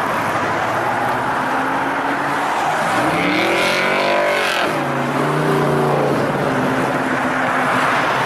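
Hot-rod Chevrolet Vega's V8 running hard as the car pulls away: the revs climb about three seconds in, fall back just before the middle, then hold steady.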